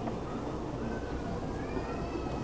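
A faint, drawn-out high animal call rising slightly in pitch in the second half, over steady background noise.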